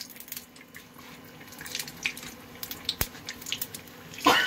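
Bread pakora deep-frying in hot mustard oil in an iron kadhai, sizzling with many small irregular crackles and pops. A single sharp click about three seconds in.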